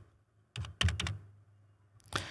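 Computer keyboard keystrokes: a quick run of about five key clicks within less than a second, typing a short number into a field.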